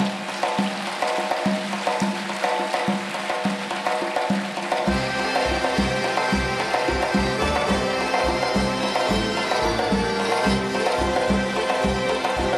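Music with a steady percussive beat and sustained melodic lines; a heavier bass beat comes in about five seconds in.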